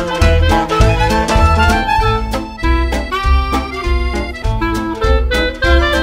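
Instrumental background music: a melody over a steady bass beat of about two notes a second.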